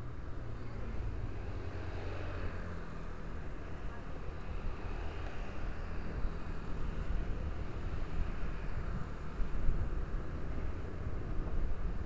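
Steady low rumble of a vehicle moving through street traffic, with engine and road noise and motorcycles riding close alongside.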